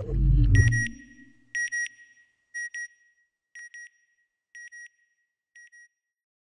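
Electronic sound effect: a low whoosh that falls in pitch in the first second, then a double beep repeated about once a second, six times, each pair quieter than the last.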